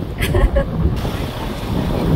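Wind buffeting the phone's microphone, an uneven low rumble, with a brief snatch of a woman's voice just after the start.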